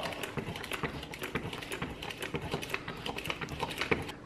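Hand-pumped push-down spinning whisk working pancake batter in a shallow bowl: rapid, irregular clicking from the plunger mechanism as it is pushed down and springs back, with the batter churning.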